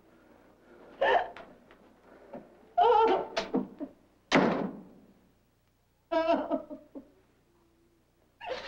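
A woman moaning and crying out in pain after being beaten: four short wordless cries a second or two apart, one of them falling in pitch.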